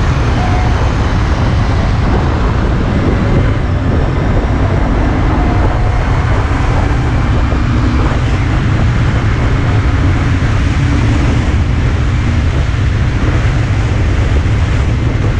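Steady, loud wind rush and low buffeting on a GoPro Hero 5's microphone while riding fast along a road, with road and engine noise underneath and a faint engine drone in the middle of the stretch.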